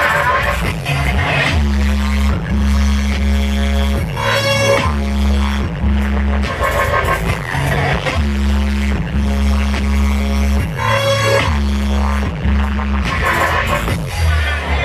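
Dubstep played loud over a club sound system, dominated by heavy sub-bass notes in a repeating pattern.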